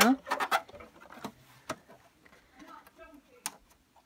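A few light, scattered clicks and taps from handling the boxed plastic toy house and its packaging, with a cluster just after the start and single clicks later on.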